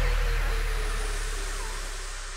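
Electronic dance music breakdown: a steadily falling tone and a deep bass fading out under a wash of noise, the whole getting quieter. A few short swooping sweeps come in near the end.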